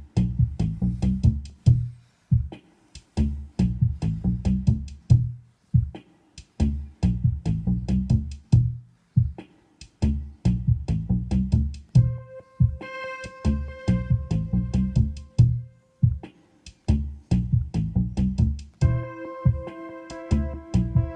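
Electronic backing loop from KORG Gadget on an iPad: a drum-machine beat with a repeating synth bassline. About twelve seconds in, a sustained synth pad chord comes in over it, played from the TC-Data touch controller, and it moves to a different chord near the end.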